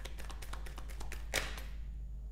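Tarot cards being shuffled and handled: a quick, irregular run of light card clicks and taps with one sharper snap about a second and a half in, the clicking stopping just before the end.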